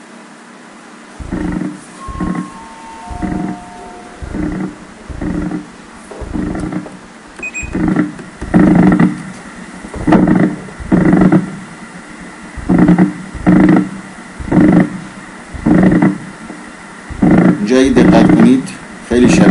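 EMG loudspeaker sound of myokymic discharges: the same motor unit firing in short repeated bursts, about two bursts a second, louder from about eight seconds in. This bursting pattern of spontaneous motor unit firing is the sign of myokymia.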